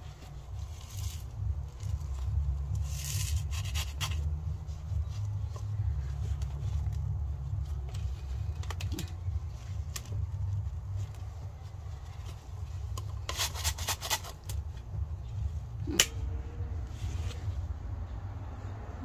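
Red plastic soil scoop scraping and pouring gritty topdressing soil around potted succulents, in a few short rustling bursts with small clicks, over a steady low rumble.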